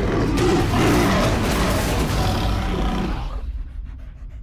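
A big cat roaring over a deep, steady rumble, loud at first and fading out about three seconds in.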